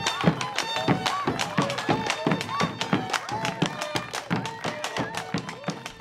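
Lively folk music: fiddles playing over a steady drum beat of about two strokes a second, with voices in the mix.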